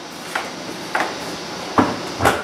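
A couple of faint clicks, then a louder clunk near the end: kitchen things being handled and set down on the counter.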